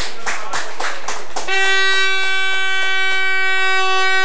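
Spectators clapping, then a fan's air horn sounding one long steady blast from about a second and a half in, in celebration of a goal just scored.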